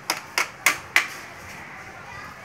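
Four sharp knocks of a small toy tool struck against a child's tricycle, about three a second, in the first second or so.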